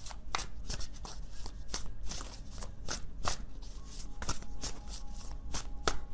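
A tarot deck being shuffled by hand: an irregular run of short card-on-card slaps, several a second.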